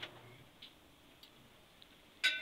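Faint handling of paper sheets: a short click at the start, then a few faint ticks, otherwise near silence.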